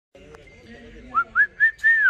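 A person whistling: four short notes starting about a second in, each rising and then falling in pitch, the last one drawn out and sliding down.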